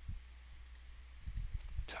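A few faint computer mouse clicks, mostly in the second half, as keys are clicked on an on-screen calculator.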